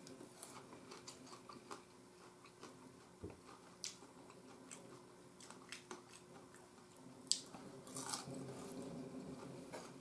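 Faint chewing of crisp fried scarlet globemallow, with scattered short, sharp clicks and crunches.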